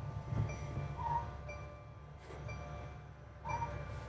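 Mercedes-Benz Sprinter diesel engine idling just after being started, heard from the driver's seat as a steady low rumble, with a short high beep repeating about once a second.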